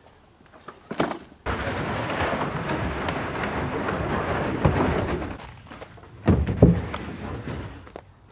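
Steady rain noise that starts suddenly about a second and a half in and dies away a few seconds later, followed by a few low, heavy thuds near the end.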